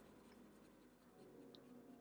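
Faint sound of a black marker pen's tip moving across paper as a curved line is drawn.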